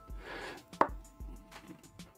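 A single sharp tap a little under a second in, over faint background noise.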